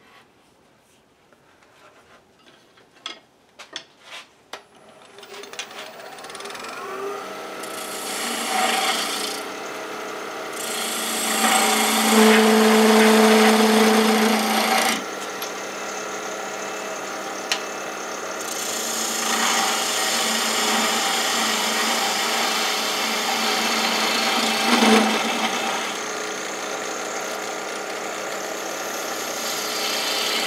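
Skew chisel slicing thin end-grain shavings from a spinning fresh green applewood branch on a wood lathe: a continuous scraping hiss with a steady pitched ring, starting a few seconds in after faint ticks and loudest in the middle.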